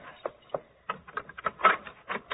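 Radio-drama sound effect of a key working in a door lock: scattered metallic clicks, then a quick cluster of rattling clicks about three-quarters of the way in as the lock turns.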